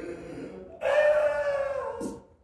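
A voice holding one drawn-out, slightly falling note for about a second, starting just under a second in, after a softer rough sound.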